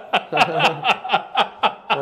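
Men laughing in short, repeated bursts, about four a second.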